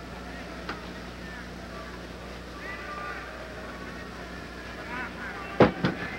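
Arena crowd murmuring, with faint distant shouts around the middle, over a steady low hum. A loud voice cuts in just before the end.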